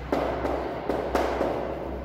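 Chalk writing on a blackboard: a string of sharp taps as the chalk strikes the board, each followed by a short scratchy stroke, several in quick succession.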